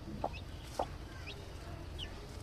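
Brooding hen clucking softly a few times, with faint short peeps from her newly hatched chicks.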